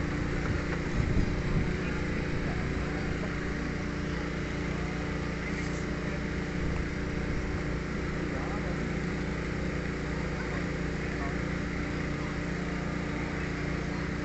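A steady engine hum that does not change, with faint voices in the background.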